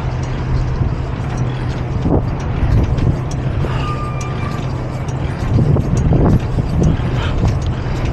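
Semi truck's diesel engine idling steadily, with a few light knocks and rattles a little past the middle as the trailer's landing-gear crank handle is handled.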